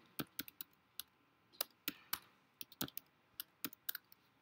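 Computer keyboard being typed: about fifteen separate key clicks in uneven short runs, as a word is keyed in.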